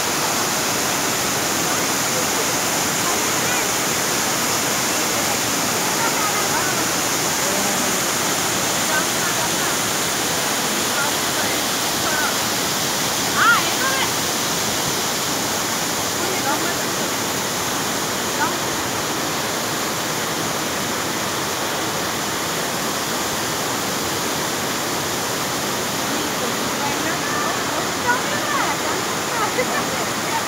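Steady rushing roar of a waterfall cascading over rocks, with faint voices of people here and there.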